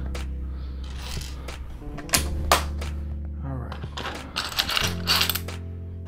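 Plastic LEGO bricks clicking and rattling as pieces are picked up and handled: a few sharp separate clicks, then a denser clatter about five seconds in, over soft background music.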